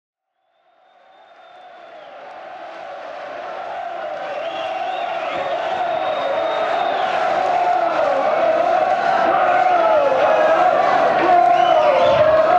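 Large rock-concert audience chanting and cheering in a theatre. It fades in from silence within the first second and grows steadily louder throughout.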